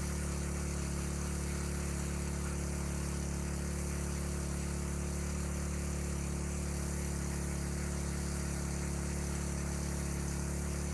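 A 3 hp petrol-engine water pump running at a steady, even pitch while it drives water through a fire hose, with the hiss of the hose jet spraying into water.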